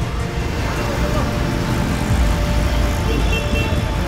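City street traffic noise, a steady rumble of passing vehicles, under background music.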